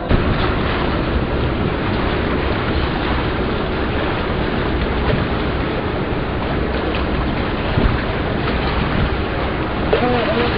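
Steady rushing wind noise on the microphone from the open side of a moving river cruise ship, with the low rumble of the ship under way mixed in.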